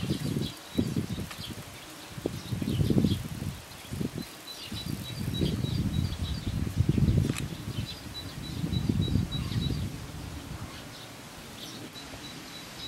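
A low buzzing hum that swells and fades several times, with short high chirps repeating above it, and a single sharp click about seven seconds in.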